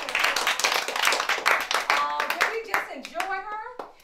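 A small group of people clapping as a song ends. The applause starts at once, is dense for about three seconds and then thins to a few claps, with children's voices talking and cheering over it from about two seconds in.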